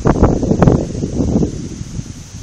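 Wind buffeting a phone's microphone outdoors, a loud irregular rumble that eases off near the end.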